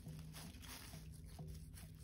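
Quiet background ambience: a faint steady low hum with a few light rustles.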